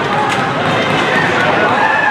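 An excited commentator's voice, drawn out and wavering in pitch, over steady arena noise.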